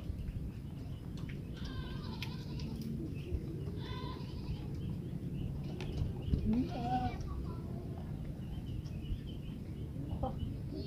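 A few short animal calls, about two, four and seven seconds in, over a steady low background rumble.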